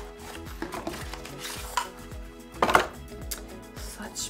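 A skincare bottle being slid out of its cardboard box, with rustling and light knocks of packaging, the sharpest about two-thirds of the way through. Soft background music plays underneath.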